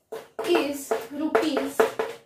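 A voice talking, with sharp taps of chalk striking a blackboard as it writes.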